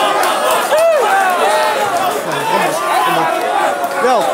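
A standing crowd of people talking and calling out over one another, many voices at once, with one voice shouting out about a second in.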